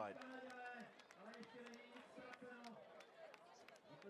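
Faint voices carrying across the arena, speech-like but not the commentator, with scattered sharp clicks.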